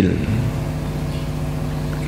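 A steady low mechanical hum that holds at one level and pitch, with the man's voice dying away in a short echo just at the start.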